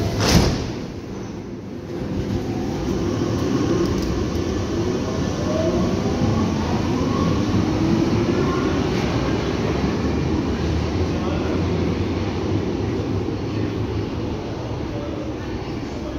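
Berlin U-Bahn train pulling out of an underground station. A sharp knock comes just after the start. Then the traction motors' whine rises in pitch as the train accelerates past over a steady rumble of wheels on rails, easing slightly near the end as it leaves.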